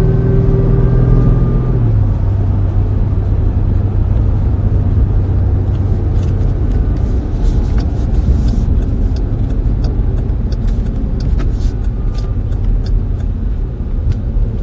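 Car engine and road rumble heard from inside the cabin: a steady low drone whose engine note drops about two seconds in, with scattered light clicks in the second half.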